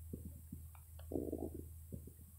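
Faint clicks and a short gurgling sound about a second in, over a low steady hum: small mouth or stomach noises from a person close to the microphone, pausing between words.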